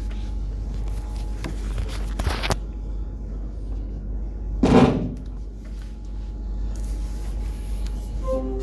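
Steady low hum with a few faint clicks, and one brief, louder thump-like rustle about halfway through.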